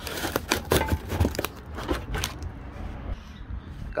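Cardboard box rustling and scraping, with a run of knocks and clicks as a pair of steel jack stands is pulled out of it; the knocks come thickest in the first two and a half seconds and then die down.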